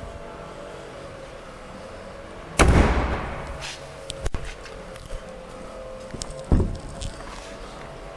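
A car door is shut with a heavy thump about two and a half seconds in, and the sound dies away over about a second. A sharp click follows, then a lighter thump near the end as the rear hatch is opened, over a faint steady hum.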